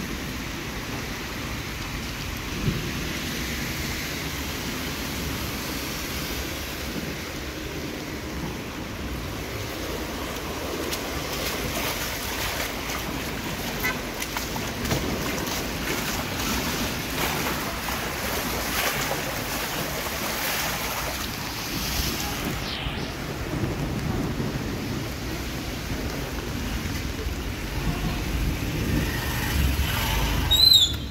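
Steady rushing wash of rainwater running over a wet street after a downpour.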